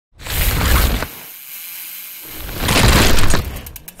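Two loud bursts of mountain bike noise, drivetrain clatter with dirt spraying, each about a second long, with a quieter hiss between them.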